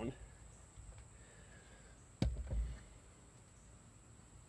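Camera handling noise as the camera is turned around: a sharp knock about two seconds in, followed by a low thump and a smaller knock, over a faint steady background.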